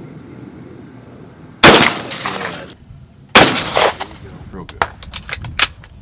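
Two shotgun shots at clay targets, about a second and a half apart, each with a short echo. A few light clicks follow near the end.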